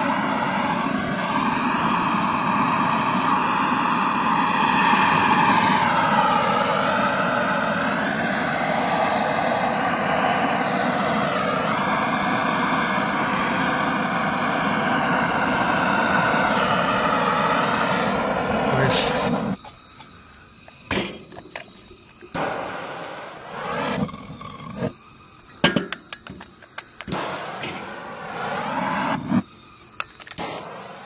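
Hand-held propane torch burning with a loud, steady rush of flame while it is held to charcoal to light it. The rush cuts off suddenly about twenty seconds in, leaving only scattered faint clicks and knocks.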